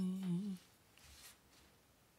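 A person humming one short closed-mouth note, held for about half a second, dipping slightly in pitch and rising again before it stops.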